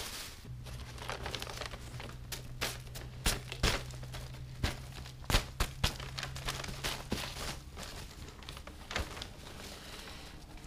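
Newspaper sheets crinkling and rustling as they are peeled off the top of a worm bin, with irregular crackles from the dry leaf bedding being handled beneath.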